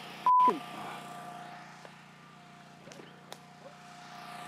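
A short, loud electronic beep, one steady tone about a third of a second in, followed by faint background hum with a few light clicks.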